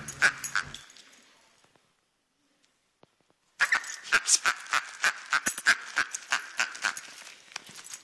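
A small Schnoodle dog makes quick short vocal bursts as it lunges and bites at a toy in play. There is a gap of near silence about two seconds in. The bursts start again abruptly after it and come fast and densely.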